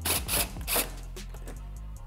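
Cordless impact driver run in three short bursts in the first second, backing out wheel-well screws on a Mustang's front bumper cover, over steady background music.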